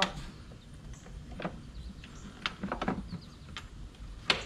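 A few light plastic clicks and knocks, spaced irregularly, as a new engine air filter is slid down and seated in a car's plastic air box.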